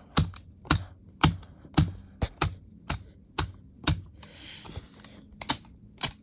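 A steady run of sharp taps, about two a second, as hands handle and knock paper cutouts against each other. There is a short rustle of paper about four and a half seconds in.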